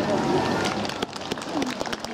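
Many shoes tapping and scuffing on cobblestones as a line of dancers walks, with voices talking among them.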